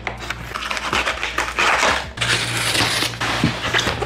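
Utility knife slicing through packing tape and cardboard on a large box: a rough, scratchy tearing, in two long strokes with a short break around two seconds in. Toward the end the heavy cardboard box is handled and tipped, its cardboard rubbing.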